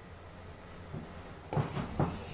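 Quiet room tone with a low steady hum, and a faint brief sound about one and a half seconds in.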